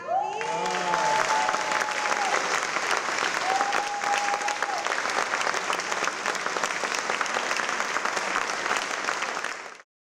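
Audience applauding loudly and steadily at the end of a dance performance. A long held whoop rises over the clapping about half a second in, and a second held cheer comes around four seconds in. The applause cuts off suddenly just before the end.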